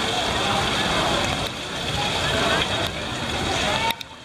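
Steady rush of falling, splashing water mixed with the talk of many people nearby. The noise drops sharply just before the end.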